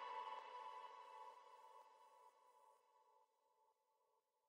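Background music fading out: a held, ringing chord dies away over about three seconds into near silence.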